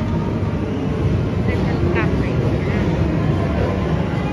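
Steady low rumble of a large indoor hall's background noise, with a few short high-pitched voice sounds near the middle.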